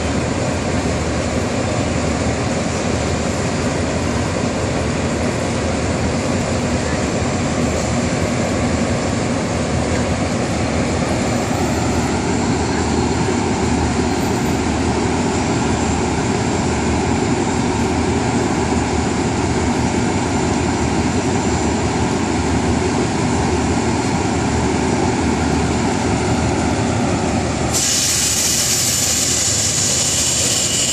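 Diesel locomotive of a Thai passenger train running steadily while standing at the platform. A sudden loud hiss starts near the end.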